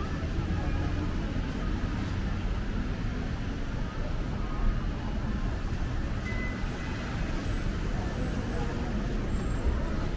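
City street ambience: a steady hum of road traffic with voices of passers-by mixed in.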